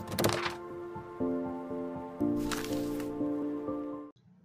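Short intro music sting: sustained chords that change twice, with a whooshing sound effect near the start and another just past the middle, cutting off suddenly at the end.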